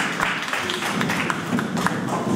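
Applause from a small audience dying down to scattered hand claps, with a murmur of voices rising under it.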